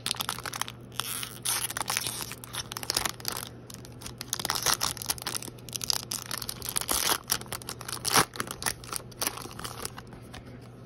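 Foil trading-card pack wrapper being torn open and crinkled by hand: an irregular run of crackles and rips, with one louder rip about eight seconds in.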